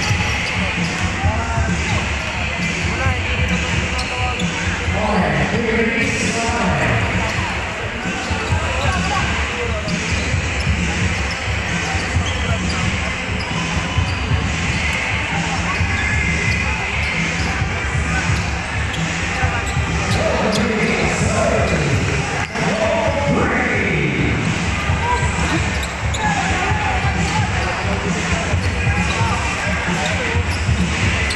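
A basketball bouncing on a hardwood court during play in a large gymnasium, over a steady wash of crowd voices.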